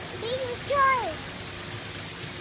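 A young child's voice giving two short high-pitched vocal sounds with no clear words, the second sliding downward in pitch, over a steady background hiss.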